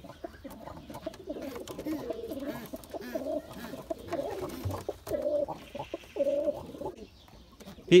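Domestic pigeons cooing: low, warbling coos in a string of phrases with short breaks, stopping about a second before the end.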